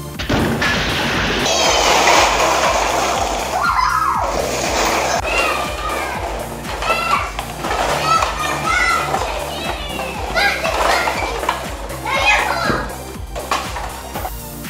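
A tall tower of stacked disposable cups collapses in a long clatter of cups spilling onto a wooden floor, lasting about three seconds. Children then shriek and laugh as they scramble through the scattered cups, over background music with a steady beat.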